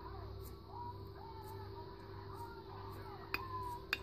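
Metal spoon mixing crushed biscuit crumbs with melted margarine in a dish, with two sharp clinks of the spoon against the dish late on, over a steady low hum.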